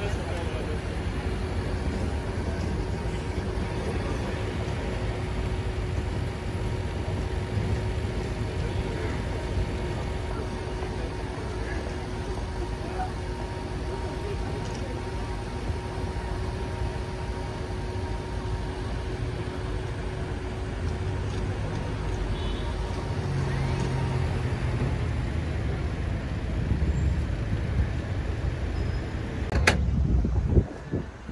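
City street traffic at an intersection: cars and vans running and idling in a steady low rumble. A steady engine hum runs under it and fades out a few seconds before the end.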